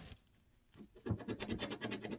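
A coin scratching the coating off a scratch-off lottery ticket in quick, repeated short strokes, starting about a second in after a brief quiet pause.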